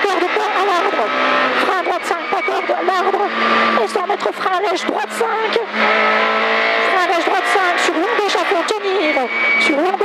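Peugeot 106 F2000 rally car's four-cylinder engine at full throttle, heard from inside the cabin, its revs rising and falling through gear changes, with frequent sharp clicks and knocks.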